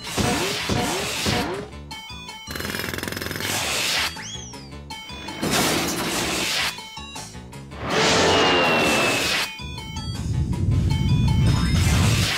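A quick run of cartoon sound effects over music: falling whistle-like glides at the start, crashing noise bursts, a rising and falling zing, and a low rumble building near the end.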